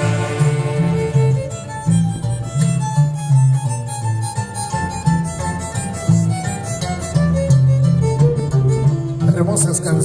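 Live Peruvian orchestra music: saxophones, violin and harp playing a tune over a pulsing bass line. A held saxophone phrase ends about a second and a half in, and the melody carries on.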